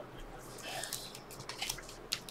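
Faint rustling and soft clicking of glossy chromium trading cards being slid one behind another through a stack in the hands.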